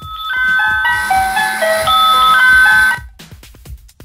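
Toy doll crib's built-in musical mobile playing a short electronic lullaby tune, note by note, that stops about three seconds in.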